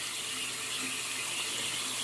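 Bathroom sink faucet running a thin, steady stream of water into the basin and its drain, a steady hiss of falling water. The drain is clogged and the water backs up.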